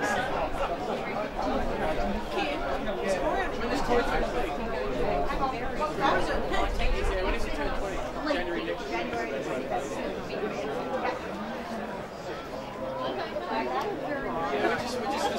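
Overlapping chatter of several spectators near the microphone, no words clear.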